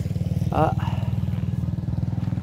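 A small engine running steadily, a low, even throb that does not change.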